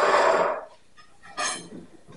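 A man's voice trails off, then about one and a half seconds in comes one brief, bright metallic clink as the steel rotisserie spit rod is picked up.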